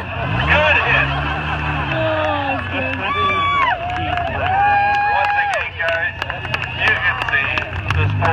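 A demolition-derby car engine running, its pitch rising and falling in the first couple of seconds, under the voices of spectators talking and calling out. Scattered sharp clicks come in the second half.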